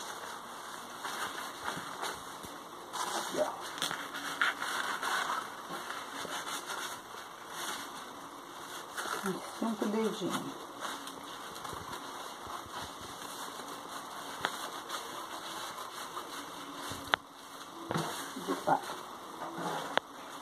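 Crepe paper rustling and crinkling as a large folded sheet is opened out and smoothed by hand, with one sharp click near the end.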